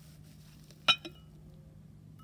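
Glass lid of a glass jar clinking against the rim as it is lifted off: one sharp clink with a short ring about a second in, followed by a lighter tap.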